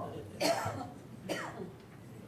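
A person coughing twice, about a second apart.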